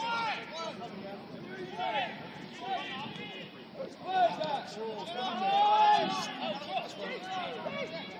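Men's voices calling and shouting across a football pitch during play, overlapping and without clear words, the loudest call coming about five and a half seconds in.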